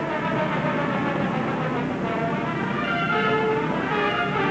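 Orchestral film score with brass playing sustained chords.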